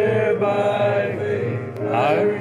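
Voices singing a slow hymn in long held notes, sliding up into the next note near the end.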